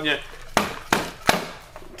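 Three sharp knocks in quick succession as cardboard firework cake boxes are handled and set down on a table.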